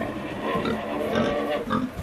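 Domestic pig grunting in short, irregular grunts.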